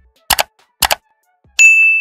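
Subscribe-animation sound effects: two quick double mouse clicks, then about one and a half seconds in a bright notification-bell ding that rings on and slowly fades.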